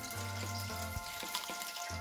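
Quiet background music of held, sustained tones over a faint steady hiss, with a few soft clicks as a piece of deep-fried chicken is bitten and chewed.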